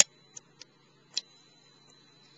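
Wood fire crackling: a few sharp, irregularly spaced pops, the loudest at the very start and another about a second in.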